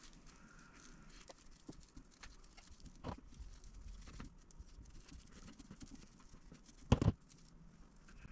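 Quiet fabric rustling and small clicks as a small sewn fabric leaf is turned right side out by hand. Scissors knock sharply once on the cutting mat about seven seconds in.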